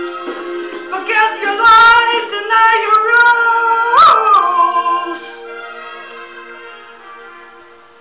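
Live song with a voice singing over guitar, loudest in the middle, with a sharp sliding high note about four seconds in; then the last notes are held and fade away as the song ends.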